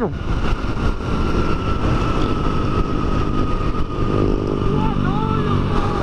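Small dual-sport motorcycle riding at speed, its engine running steadily under heavy wind rushing over the microphone. The engine note comes through more clearly from about four seconds in.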